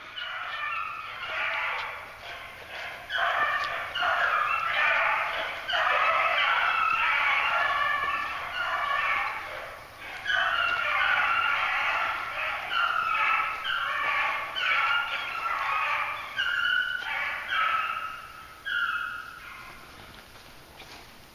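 A pack of beagles baying on a rabbit's scent, several voices overlapping almost without pause. The cry dips briefly about ten seconds in and fades near the end.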